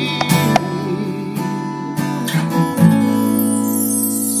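Instrumental music: acoustic guitar playing with sharp hits from a Roland HandSonic 10 electronic hand-percussion pad. About three seconds in, a held chord starts and rings on.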